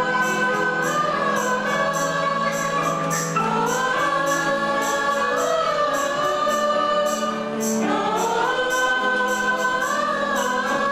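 Mixed choir of men and women singing a Tamil Christian hymn in unison, holding long notes that step up and down in pitch, over a light percussion beat of about two to three strokes a second.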